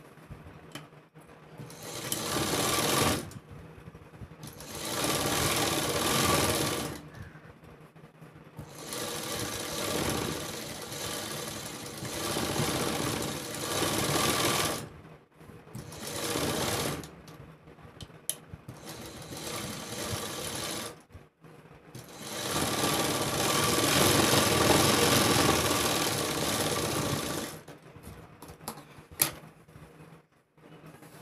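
Sewing machine stitching a seam in about six runs of one to six seconds, stopping and starting with short pauses between as the fabric is guided.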